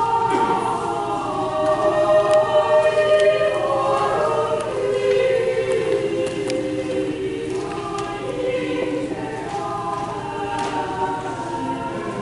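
A congregation and choir singing a hymn together, many voices holding long notes.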